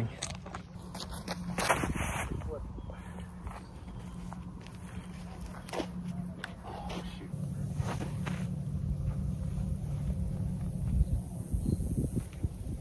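Outdoor ambience with faint, indistinct distant voices over a steady low hum, with a few soft knocks or footsteps.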